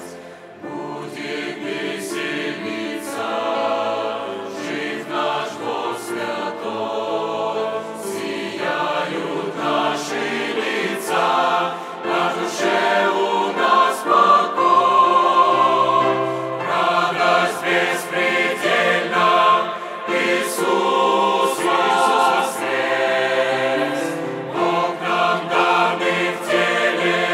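A large mixed choir of men's and women's voices singing a hymn in parts in Russian. After a short break between phrases at the start, the singing grows louder toward the middle.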